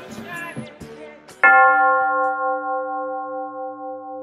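Background music trails off. About a second and a half in, a bell is struck once and rings on in a steady, slowly fading tone with a slight waver.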